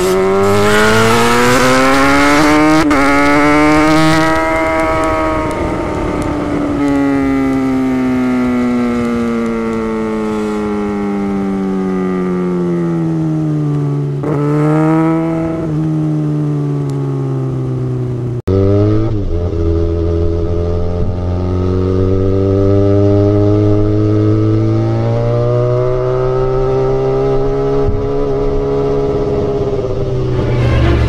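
Kawasaki Ninja ZX-6R inline-four sport bike with an aftermarket exhaust, ridden in traffic. Its revs rise over the first few seconds, then fall away slowly as the throttle is rolled off, with a short blip of revs about halfway. After a sudden break about two-thirds through, it runs at lower, steadier revs with gentle rises.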